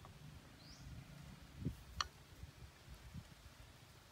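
Faint outdoor background with one short rising bird chirp early on and a sharp click about two seconds in.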